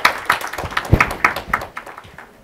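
Audience applauding, many hands clapping, the applause thinning out and fading away near the end.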